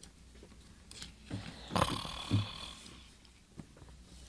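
Radio-drama sound effect of a man snoring: a few low, rasping grunts in the middle, with a ringing musical tone that fades, starting about two seconds in.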